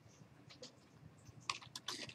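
Computer keyboard being typed on: a few faint keystrokes, then a quick run of keys in the second half.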